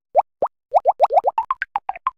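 A string of short cartoon pop sound effects, each one a quick upward bloop: two single pops, then a fast run of about a dozen that climb higher in pitch toward the end.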